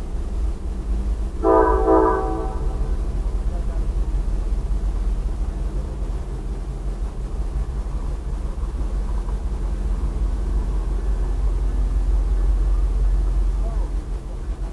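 A train's air horn sounds one blast of about a second, a little over a second in, over a steady low rumble.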